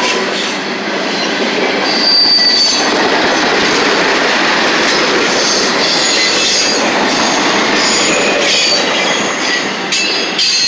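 Freight train cars passing close by: the steady noise of steel wheels rolling over rail joints, with short high-pitched wheel squeals, the clearest about two seconds in.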